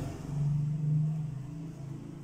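Steady low motor hum with no speech over it.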